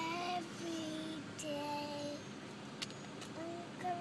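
A young girl singing a slow tune unaccompanied, holding a string of drawn-out notes that step up and down, with a short pause midway.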